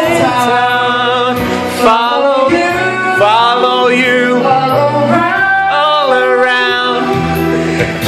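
Karaoke: a voice singing a melody with long, gliding held notes through a microphone over a backing track with a steady beat.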